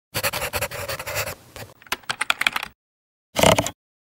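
Pencil-on-paper scribbling sound effect: a run of quick scratchy strokes lasting about two and a half seconds, ending in a faster series of sharp ticks. A short separate burst of sound follows about half a second later.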